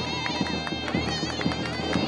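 Zurna (shawm) and dahol (bass drum) playing festive folk music: a loud, reedy, pitched melody that wavers and ornaments after about a second, over steady drumbeats.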